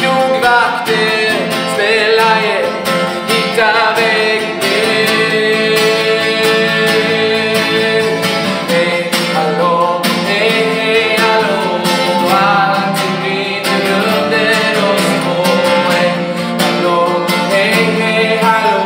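A man singing a pop song, accompanied by his own strummed acoustic guitar.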